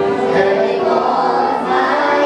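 A group of young singers and children singing together in chorus, holding long notes.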